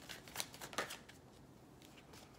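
A deck of tarot cards being shuffled in the hands, with a few soft card clicks in the first second.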